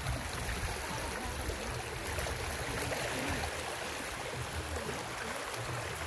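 Shallow floodwater flowing and rushing steadily across a flooded lane, a continuous watery hiss.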